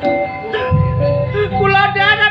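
Gamelan accompaniment of ludruk theatre: a melody of struck metallophone notes ringing and stepping in pitch over low struck notes underneath. A voice starts singing with a wavering vibrato about one and a half seconds in.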